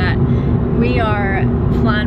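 Steady low road and engine rumble of a car being driven, heard inside the cabin, with a steady hum running through it.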